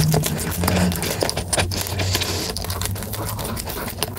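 Close-miked chewing of a mouthful of Orion Choco Pie, a chocolate-coated cake with marshmallow filling: a rapid, continuous run of small mouth clicks and smacks.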